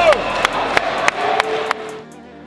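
Sharp hand claps, about three a second, over crowd noise in a volleyball arena; a man's shout trails off at the start, and a steady held tone joins in the second half.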